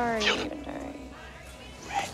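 A young man's loud yell that falls in pitch over the first half second, then a quieter murmur of hallway voices.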